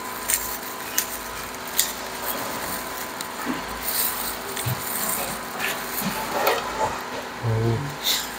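A grilled prawn's shell being cracked and peeled by hand in a thin plastic glove: a few sharp snaps near the start, then crackling and rustling, over a steady hiss.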